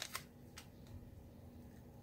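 Near silence: faint room tone, with a couple of small clicks at the very start from a plastic sample bag being handled.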